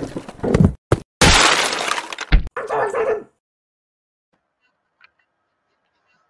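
Crashing, smashing sound effect from a CGI intro animation: a loud noisy burst of about a second that ends in a sharp hit, with a short ringing tail.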